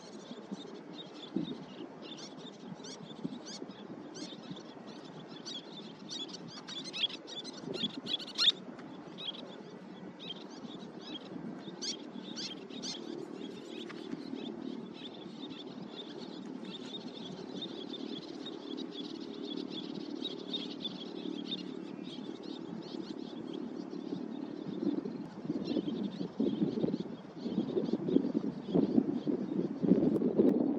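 Birds calling outdoors: short, high chirping notes, repeated irregularly in clusters and busiest in the first half. Under them runs a steady low rumble that grows louder and more uneven near the end.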